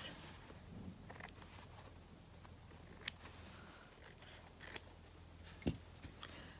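Scissors cutting through fabric: a few quiet, separate snips spread out, trimming a narrow border around a patchwork tag.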